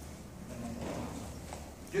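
Hooves of a Hispano-Arab horse stepping at a walk on soft arena sand, a few soft, muffled footfalls.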